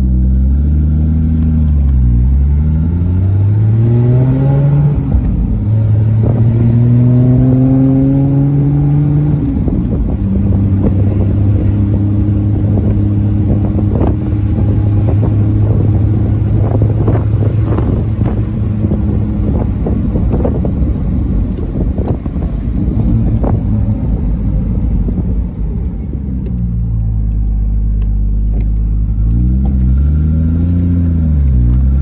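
1974 Triumph TR6's straight-six engine pulling through the gears. Its pitch climbs twice, with upshift breaks about five and nine seconds in, then holds a steady cruise before dropping away as the car slows near the end.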